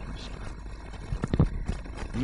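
Low outdoor background rumble with a few short clicks or knocks about a second and a half in.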